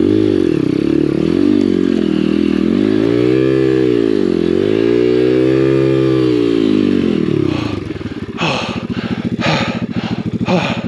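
Apollo RFZ 125cc pit bike's single-cylinder four-stroke engine revving up and down in several swells as it is ridden over rough trail. Near the end it drops back to a lower, uneven note.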